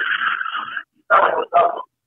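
Sound through a telephone line: a short stretch of noisy line audio, then two brief bursts, after which the line goes dead silent.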